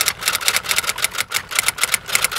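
Typewriter-style typing sound effect: a rapid, slightly uneven run of sharp keystroke clicks, about seven or eight a second.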